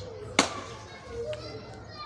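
Faint background voices of children playing, with one sharp click about half a second in.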